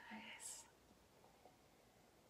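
A woman's voice finishing a word, then near silence: room tone.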